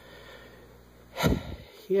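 A single short, noisy breath about a second in, over a faint steady background hum, followed by the start of speech at the very end.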